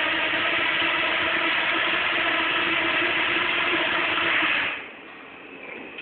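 A swarm of nano quadrotors' propellers buzzing together at a steady pitch, with the drones settled on the floor after landing; the buzz cuts off about five seconds in as the motors stop.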